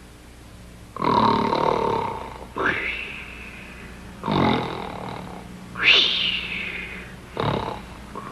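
Exaggerated comedy snoring: about five loud snores in a row, roughly a second and a half apart, some sliding up or down in pitch.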